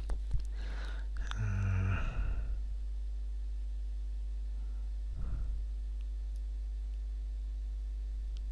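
Steady low electrical hum on the recording, with a single mouse click just after the start and a short voiced sigh about one and a half seconds in.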